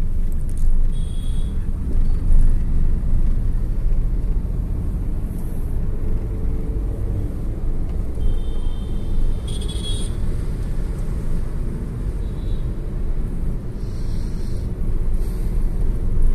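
Steady low rumble of a car in traffic heard from inside its cabin, with a few short high-pitched beeps about a second in and again around eight to ten seconds in.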